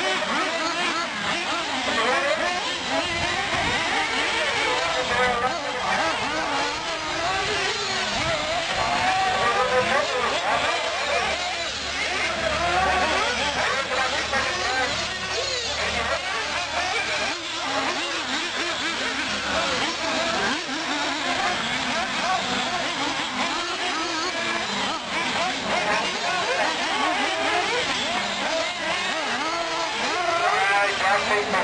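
Several radio-controlled off-road buggies running laps on a dirt track, their motors whining up and down in pitch as they speed up and slow through the turns, with voices mixed in.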